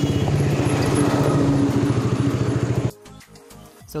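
Motorcycle engine running steadily with rapid, even firing pulses, heard from on the bike, cutting off abruptly about three seconds in; faint music follows.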